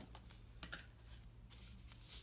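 Faint, scattered light clicks and taps as small pieces of tempered glass screen protector are handled and picked up, over a low steady room hum.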